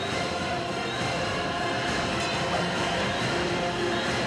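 Movie-trailer soundtrack: sustained dramatic score over a steady, dense rumbling sound effect.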